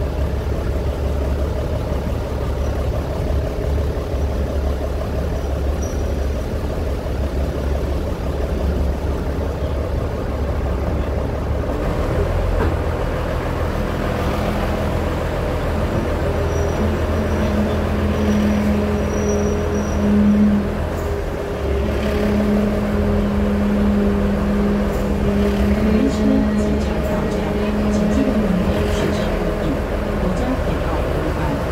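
Diesel engine of a DR2300-class railcar heard from on board, a steady low drone as the car runs along the museum track. From about halfway through, a steadier, higher drone joins it, breaking off briefly for about a second and then resuming.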